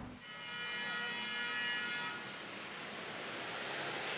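Night-time city street ambience: a steady hiss of distant traffic, with a faint high-pitched whine for roughly the first two seconds.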